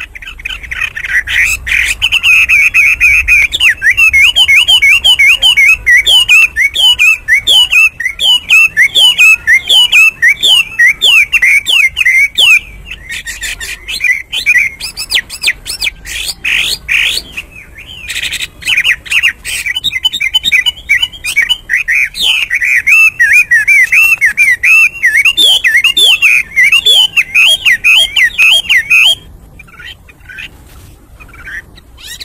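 Chinese hwamei singing loudly: long, fast runs of rapid sliding notes, with brief lulls about a third and halfway through, stopping about a second before the end.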